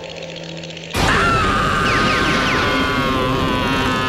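A cartoon character's long, high-pitched scream. It starts suddenly about a second in, holds for about three seconds and sags slowly in pitch, after a quieter fading musical tail.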